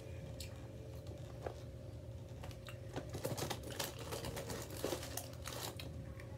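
Crinkling and rustling of a box of bear-shaped graham crackers being handled as a hand reaches in, with a burst of crackly clicks in the second half.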